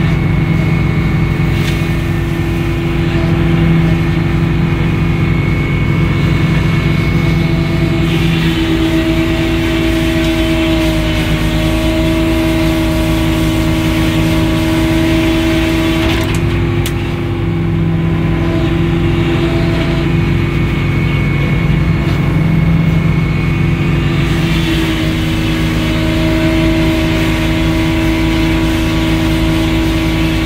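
Edmiston hydraulic circular sawmill running and sawing a pine log, a steady machine drone throughout. A higher whine with a rough hiss rises over it about a third of the way in and again near the end, as the circular blade is in the cut.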